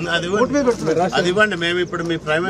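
Men's voices talking over one another, the words not clear.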